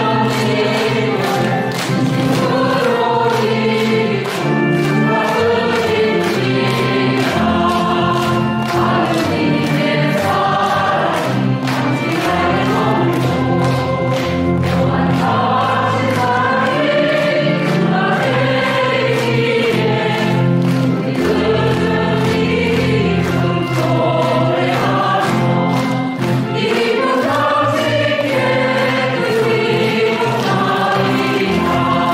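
Church choir singing a hymn, mostly women's voices, over steady held low notes.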